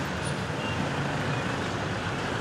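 Steady street noise of a slow-moving convoy of cars and pickup trucks, engines running, with an even hiss and no sudden events.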